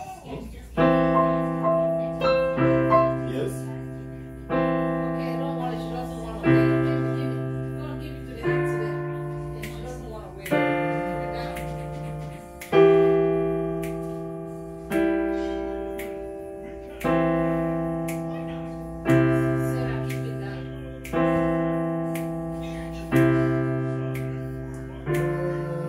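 Digital piano played slowly as a beginner's practice exercise: full chords struck about once every two seconds, each ringing and fading before the next, with a few quicker notes just after the first chord.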